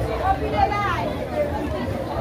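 People talking and chattering, with several voices at once, over a steady low rumble.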